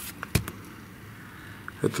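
One short, sharp knock about a third of a second in, over faint room tone, with a man's voice starting near the end.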